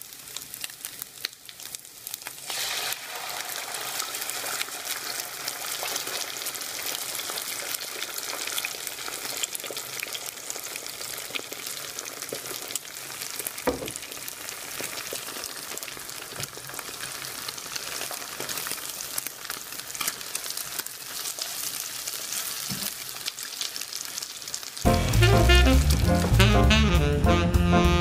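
Beaten egg and diced sausage sizzling and crackling in a hot frying pan. The sizzle starts a couple of seconds in as the egg goes into the pan and then runs steadily. Music cuts in loudly near the end.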